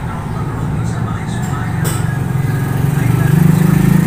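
Low, steady engine drone that grows louder toward the end, with a single sharp click about two seconds in.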